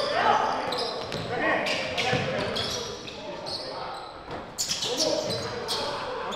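Basketball bouncing on a hardwood gym floor in a pickup game, with sharp short impacts scattered through, more of them after about four and a half seconds, and players' voices in the background.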